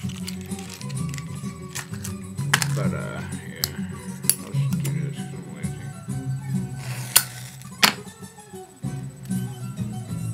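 Acoustic guitar music playing steadily, with several sharp clicks and clinks scattered through it, the loudest two about seven and eight seconds in.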